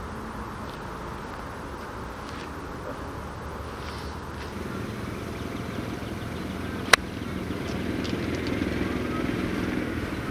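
A single sharp click of an iron club face striking a golf ball, about seven seconds in, over a steady low background rumble that grows a little louder around the middle.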